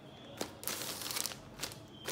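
Plastic bread bag crinkling as a hand grips and presses it, with a sharp click about half a second in.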